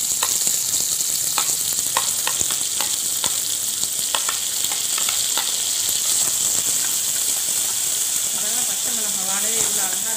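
Chopped onions and tomatoes sizzling in hot oil in a nonstick kadai as they are stirred in, with sharp clicks of the spatula and plate against the pan in the first half.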